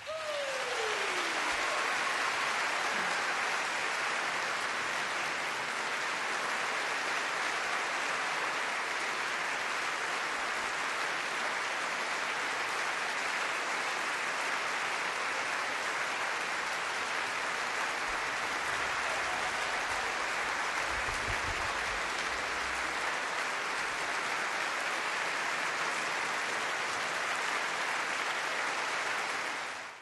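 Large concert audience applauding steadily, a long ovation right after the final note of the piece.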